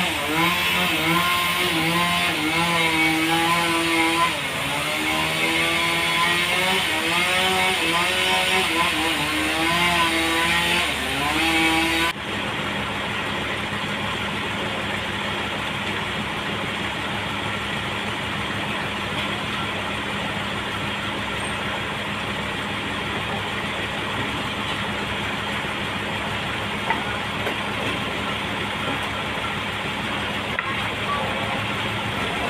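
Toyota forklift engine running under load, its pitch rising and falling as it lifts and carries a large log. After an abrupt cut about twelve seconds in, a steadier, slightly quieter engine runs on.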